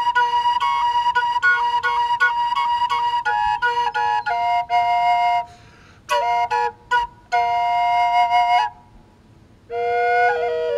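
High B minor black walnut drone flute played: a steady drone on one note under a melody of quick, sharply tongued notes in the higher chamber. The playing breaks off for breath about five and a half seconds in and again near the end.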